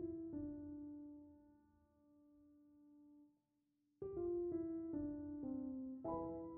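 Background piano music: a few notes struck together that ring and fade away, a short pause about three seconds in, then a new run of notes near the end.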